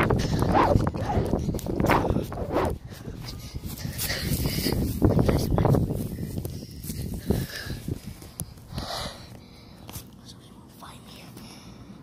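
A child whispering and breathing close to a phone's microphone, with rubbing and handling noise from the moving phone; loudest in the first half, quieter near the end.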